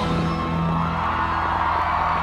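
Rock band playing live, holding a sustained chord after the vocal line ends.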